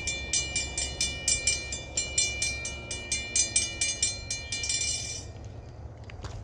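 A railroad grade-crossing bell ringing rapidly in regular strokes, then stopping abruptly about five seconds in as the train clears the crossing. Under it runs the low rumble of the freight train moving away.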